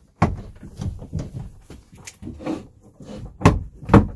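Knocks and thunks as a spring-loaded Springfield table pedestal is pushed down and the tabletop is lowered onto the dinette seats. There is a sharp knock about a quarter second in, lighter knocks after it, and two louder knocks near the end.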